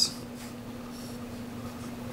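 Felt-tip marker scratching faintly on paper as numbers are crossed out and written, over a steady low hum.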